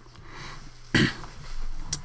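A man coughs once, a short sudden cough about a second in.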